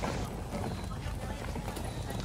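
Footsteps and a wheeled suitcase rattling over a dirt-and-gravel path, a dense run of irregular small clicks, with people's voices in the background.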